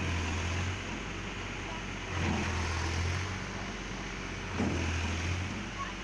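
Farm tractor's diesel engine running and revving up three times, about two seconds apart, while its hydraulic tipping trailer is raised to dump a load of sand. A steady rushing hiss of sand sliding off the trailer bed runs underneath.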